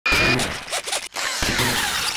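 Sound effects for an animated logo intro: a quick run of zipping, whooshing hits that start and stop abruptly, cutting out twice about a second in.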